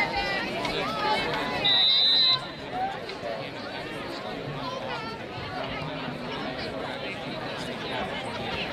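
A referee's whistle blown once, a single steady high-pitched blast of under a second, over the constant chatter of players and spectators along the sideline.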